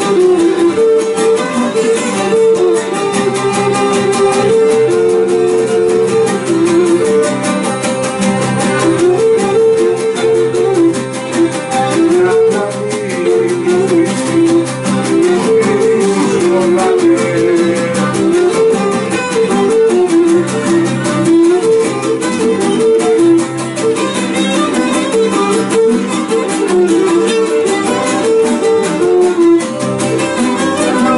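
A Cretan syrtos dance tune played live: a bowed fiddle carries the melody over strummed round-backed lutes (laouto). A man sings along in parts.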